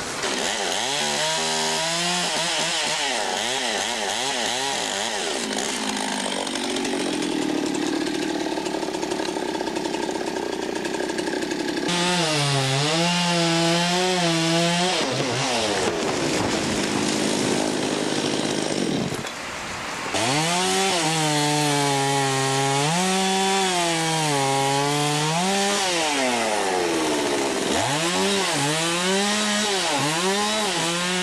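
Two-stroke chainsaw cutting limbs of a dead white pine, its engine pitch rising and falling over and over as it revs into and eases off the cuts. It drops back briefly past the middle, then revs up again.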